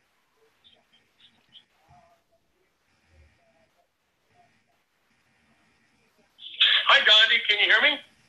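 Near silence for about six seconds, then a voice from a played-back voice recording begins about six and a half seconds in and runs to the end.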